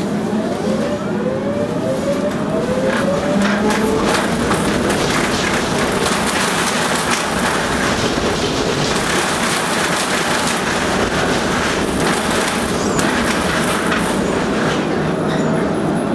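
Tram heard from inside as it gathers speed: an electric motor whine rises in pitch over the first few seconds. It then settles into a steady rumble of wheels on rails with scattered clicks, and a fresh rising whine comes in near the end.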